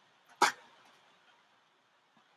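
A single short, sharp knock about half a second in.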